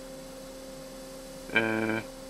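WAECO compressor-type parking air conditioner in a truck cab ceiling, its fans running with a steady hum while the compressor has not yet started. Near the end a man holds a drawn-out hesitation sound for about half a second.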